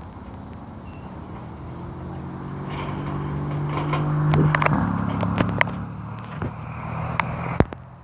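De Havilland Tiger Moth biplane's piston engine running as the aircraft moves past, growing louder to a peak about halfway through, dropping slightly in pitch as it passes, then fading. A few sharp clicks are scattered through it.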